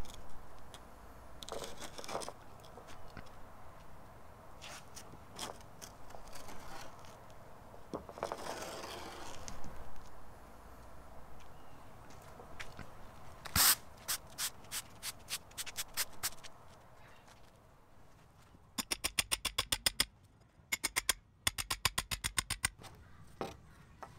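A wooden 2x4 board dragged as a screed over loose, dry compost-and-topsoil mix, its end scraping along a concrete edge: intermittent scraping with scattered knocks, a sharp knock about halfway through, and two runs of rapid, even clicking near the end.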